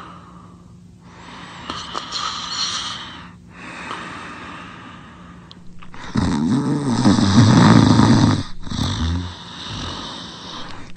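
Loud snoring: a few hissy, breathy breaths, then about six seconds in a long, low snore, the loudest sound, followed by a shorter one.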